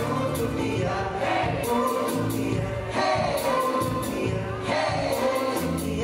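A live pop song with several voices singing together, a male and a female singer among them, over backing music with a steady beat.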